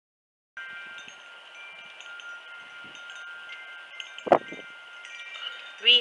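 Wind chimes ringing gently, several high metallic tones overlapping and fading in and out. A single short, loud knock-like sound comes about four seconds in.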